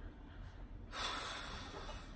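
A person breathing out audibly through pursed lips. The puff of breath starts about a second in and lasts about a second.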